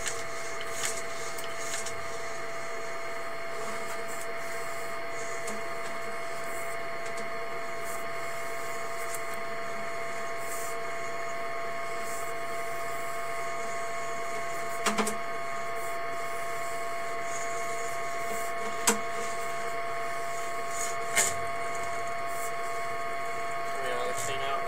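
Steady electrical hum with a constant high whine from a sewer inspection camera rig while its camera is pulled back through the line. A few short sharp clicks come in the second half.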